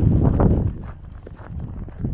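Footsteps on packed snow, a steady walking rhythm of short crunches. A loud low rumble fills the first half second or so, then the steps carry on more quietly.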